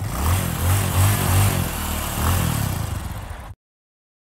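Bipolar NEMA 17 stepper motor (42HD2037-01) stepping as a rotary encoder is turned by hand, giving a pitched hum that wavers up and down with the turning speed. It stops suddenly about three and a half seconds in.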